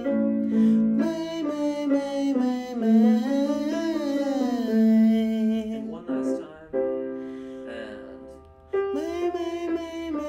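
Vocal warm-up exercise sung on a scale that climbs and falls, over piano accompaniment. The singing stops about six seconds in while the piano fades, and starts again near the end.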